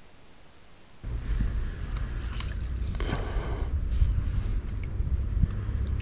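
A faint steady hiss, then about a second in a steady low wind rumble on the microphone takes over, with rustling and a few light clicks from a small boat on the water among reeds.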